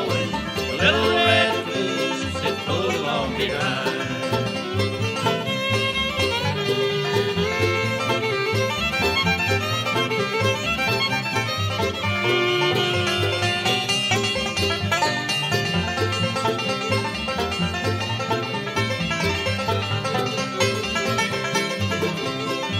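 Bluegrass band playing an instrumental break with banjo and fiddle over guitar and bass, keeping a steady driving beat.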